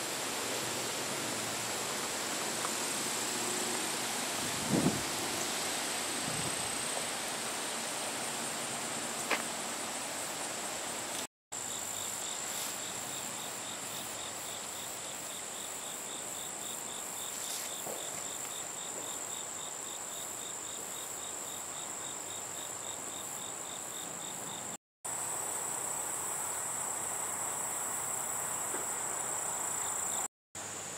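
Late-summer chorus of insects: a steady, high-pitched trill, joined for several seconds in the middle by a lower pulsing call at about three pulses a second. A soft low bump comes about five seconds in, and the sound cuts out briefly twice at edits.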